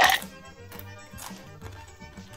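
A crisp cassava chip crunched in one sharp bite at the start, followed by a few faint chewing crunches, over steady background music.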